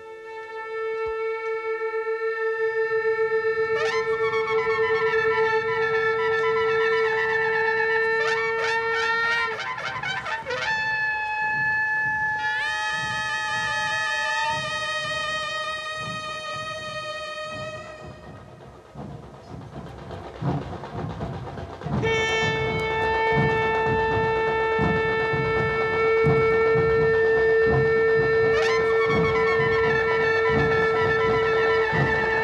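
Ensemble of Indian folk and tribal instruments playing a piece in raga Revati: a held wind drone note and a reedy wind melody over steady drum beats. The drone drops out for a while around the middle, leaving the melody over the drums, and comes back in near the last third.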